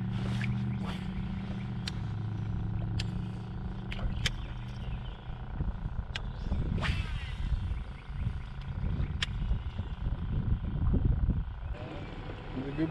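A motor running with a steady low hum that fades away about five seconds in, with scattered sharp clicks and knocks.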